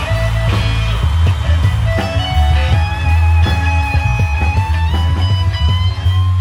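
A live rock band playing: a steady drum-kit beat and heavy bass under electric guitar holding long lead notes that step up in pitch.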